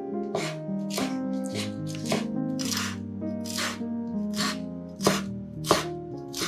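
Background music with sustained tones and a light, hissy beat about every half second. Two sharp knocks stand out near the end, knife strokes on a bamboo cutting board.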